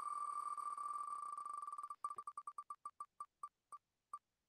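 Wheel of Names spinning-wheel tick sound effect: clicks so fast at first that they blur into a steady beep, then breaking into separate ticks about halfway through that come further and further apart as the wheel slows toward a stop.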